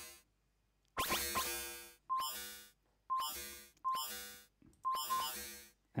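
Sequenced electronic synthesizer notes from a Bespoke Synth patch, about one a second, each starting suddenly and fading out, with a short high beep at the start of each note.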